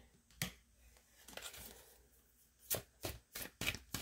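Tarot cards being handled on a cloth-covered table: a card set down with a soft click and rustle, then a quick run of sharp card clicks near the end.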